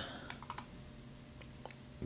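A few faint, short clicks over a low steady hum.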